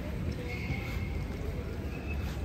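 Footsteps on a paved sidewalk over a steady low rumble of city street noise, with a brief high squeak about half a second in.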